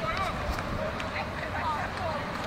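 Indistinct shouted calls from players and onlookers on a football pitch, a few short voices over steady open-air background noise.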